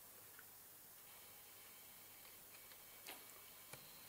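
Near silence with a very faint ticking from a pan-tilt Wi-Fi IP camera's motor as the camera turns on its own during network setup, the sign that it is configuring. Two faint clicks come near the end.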